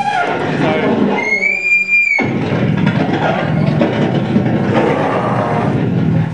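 Loud live powerviolence band playing noisy, heavy music. About a second in, a high steady whine rings over it for about a second.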